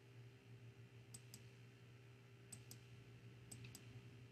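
Faint computer clicks over a low steady hum: three quick pairs of clicks about a second apart, advancing the presentation slides one at a time.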